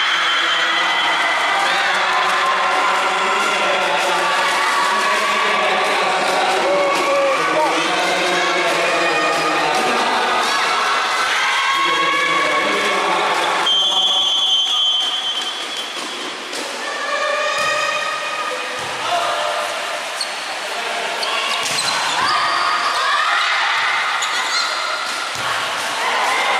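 Volleyball rally in an indoor hall: the ball smacked by players, with players and spectators shouting and cheering throughout. A referee's whistle blows once, about fourteen seconds in.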